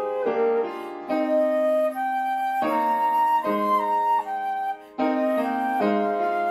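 Concert flute playing a slow melody of held notes over a lower accompaniment, with a short break for breath about five seconds in.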